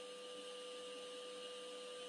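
Faint steady electrical hum with a high thin tone over a light hiss, in a pause with no speech.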